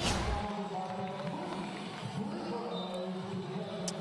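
A swoosh sound effect at the start as a broadcast replay transition wipes in, followed by steady background music with held tones.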